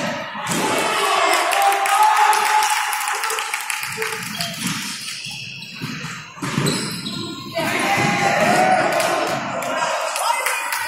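Futsal being played in a large, echoing sports hall: the ball thuds off players' feet and the wooden floor, and players call out.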